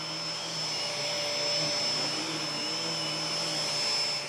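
Bosch bagged canister vacuum running steadily with an EBK360 DC battery-powered power nozzle on its wand, a steady rushing hum with a thin high whine over it.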